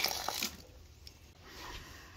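Water gushing out of the open end of a PVC drain valve onto the ground, loudest in the first half second, then fading to a faint steady hiss. The watering line is being drained so the pipe doesn't freeze.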